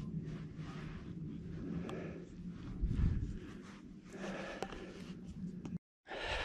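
Faint breathing and quiet scuffing of a hiker moving over soft sand, with a low thump about three seconds in. The sound cuts off suddenly just before the end.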